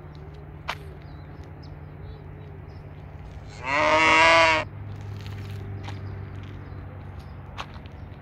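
A cow mooing once, a single call about a second long midway through, over a steady low hum.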